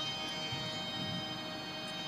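Faint, steady ringing tones left hanging from the kirtan accompaniment after the music stops, holding at an even low level with no new strikes.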